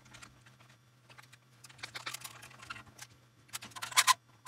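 Light, scattered clicks and taps from hands handling the strings and tuning machines at the headstock of a fretless electric bass, a little louder near the end, over a faint steady low hum.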